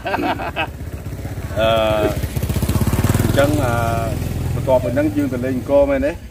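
A small engine running with a fast, even pulse. It grows louder over the first few seconds, peaks about halfway and then fades, like a motor vehicle passing by. Voices talk over it.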